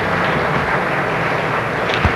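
Audience applauding steadily, a continuous even clapping noise.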